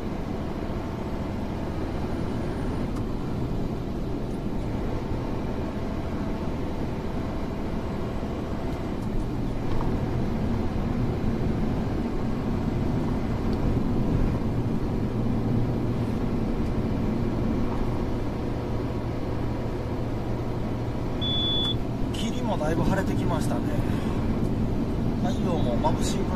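Steady engine and road noise inside a truck's cab at expressway speed, with a constant low hum. A single short high beep sounds about 21 seconds in.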